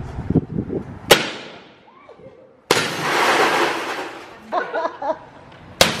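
Car door window glass struck hard in a window-film test: a sharp blow about a second in, then a sudden crash of breaking glass lasting about a second and a half, and another sharp blow on film-protected glass near the end, which cracks but holds.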